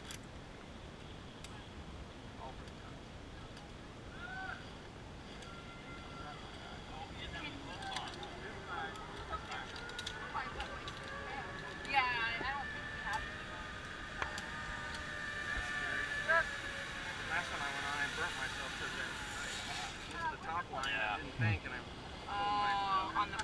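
Zip-line trolley pulleys running along the steel cable: a steady whine that grows louder over several seconds and fades near the end, with brief murmured voices on the platform.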